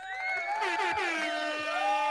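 Several voice-like tones sounding together, held and gliding a little in pitch, like a chorus or a crowd's drawn-out cry, starting right at the beginning.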